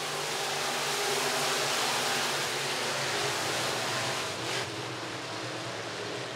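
A field of IMCA Sport Modified dirt-track cars running their V8 engines around the oval, a steady drone heard from the grandstand, easing off a little after about four seconds.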